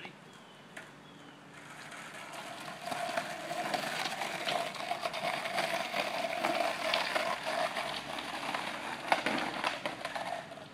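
Skateboard wheels rolling on a concrete sidewalk under a bulldog rider. The sound builds over the first few seconds to a loud, steady rolling rumble with a whirring hum and scattered clicks, and one sharp knock about nine seconds in.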